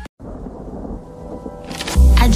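Thunder-and-rain style sound effect used as an edit transition: a low rumble under an even hiss, with no clear tune, growing louder just before the music's beat comes in at the end.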